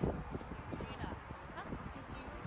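Indistinct voices of people talking, with a run of irregular low knocks and thumps, the loudest right at the start.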